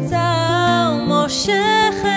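A woman singing a slow melody in held, wavering notes, with a brief sung hiss of a consonant past the middle, over a strummed acoustic guitar.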